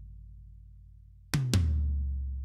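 Recorded rock-kit tom-toms, compressed, played back on their own: the low ring of an earlier hit dies away, then about a second in come two quick tom hits, the second lower and ringing on.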